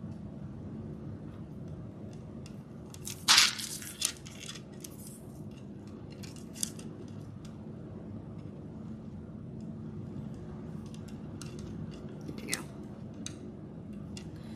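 Plastic pony beads and cord being handled and threaded by hand: light scattered clicks and rustles, with a louder short scrape about three seconds in and a few smaller ones later, over a steady low hum.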